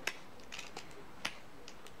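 Scraper struck against the ferro rod in the fire-starter buckle of a survival paracord bracelet: about half a dozen short, sharp scraping clicks at irregular intervals, the loudest right at the start, as attempts to throw sparks.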